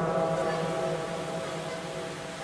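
Reverberant echo tail of a man's amplified voice through a PA system: a faint held tone that slowly dies away.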